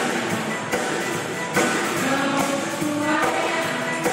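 A choir singing in harmony, several voice parts holding long notes together, with regular percussive strikes keeping the beat.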